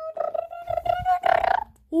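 A child's voice holding one long, nearly steady high note, rising slightly near the end before cutting off about a second and a half in.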